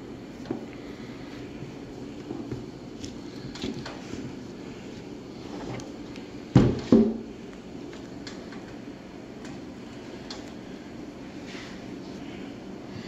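Small sheet-steel forge box, lined with ceramic fiber blanket, handled on a wooden workbench: light taps and rustling, then two loud knocks about six and a half seconds in, a third of a second apart, as the box is tipped and set down.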